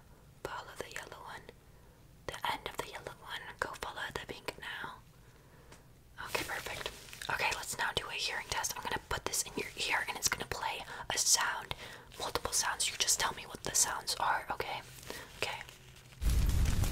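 A woman whispering close to the microphone in short phrases, more continuously from about six seconds in.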